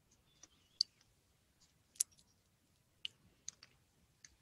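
About half a dozen short, sharp clicks at uneven intervals, with near-silence between them; two of them, about a second apart, stand out above the rest.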